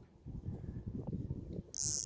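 Wind buffeting the microphone: an irregular, gusting low rumble.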